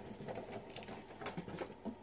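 Faint handling noises: scattered light clicks and rustles as things are moved about by hand.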